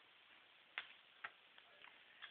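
Near silence: quiet room tone broken by two faint sharp clicks about half a second apart, a little under a second in.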